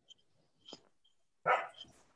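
A dog barking: one louder short bark about one and a half seconds in, after a fainter short sound shortly before the middle.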